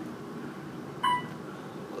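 Otis Gen2 elevator car running downward with a steady low hum, and one short electronic beep about a second in as it passes a floor.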